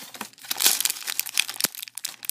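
Clear plastic candy packaging crinkling as hands handle it and pull it open: a dense run of sharp crackles, loudest a little over half a second in.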